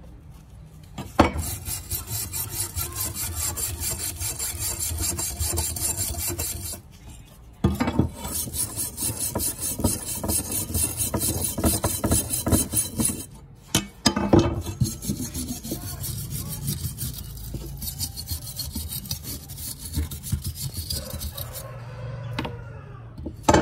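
Hand wire brush scrubbing surface rust off a steel knife blade in rapid back-and-forth strokes, with two brief pauses, about seven and thirteen seconds in. The strokes are lighter in the later part.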